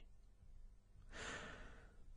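Near silence, then a man's soft intake of breath from about a second in.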